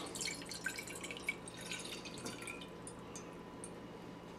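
Water poured from a glass measuring cup into a stainless steel saucepan, heard as a faint trickle and patter of drips. It thins out after a couple of seconds, with a few last drips near the end.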